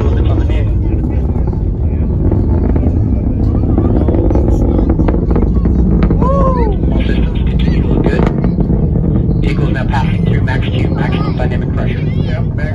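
Atlas V rocket's launch rumble, a loud, continuous low roar from the RD-180 main engine and solid rocket boosters, heard from miles away. Spectators' voices run over it.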